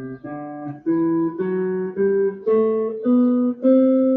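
Clean-toned electric guitar picking single notes of a scale, stepping upward about two notes a second, with the last and highest note held and ringing.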